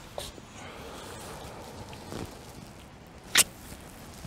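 Soft movement and clothing sounds as a woman in a fleece robe leans over and embraces a seated man. One sharp, very short rustle comes about three and a half seconds in.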